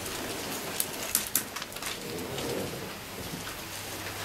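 Loose paper sheets being leafed through and handled at a pulpit close to its microphone: soft rustling with a few sharp crackles, over a faint steady hum.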